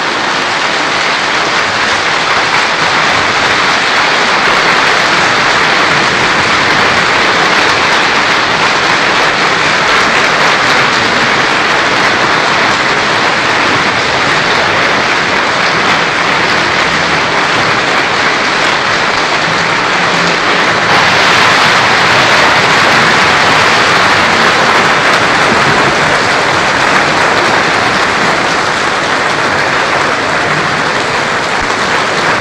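Opera audience applauding in a dense, steady clatter of many hands, growing a little louder about two-thirds of the way through.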